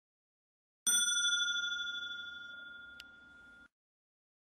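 A single bell chime struck once: a clear ringing tone that fades over about three seconds and is cut off abruptly, with a faint click just before it stops.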